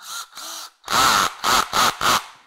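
Cordless drill/driver running in about five short bursts against a stuck pan-head screw in a steel tailgate, its clutch set low so it slips and ratchets. The ratcheting gives the screw a banging motion meant to break it loose.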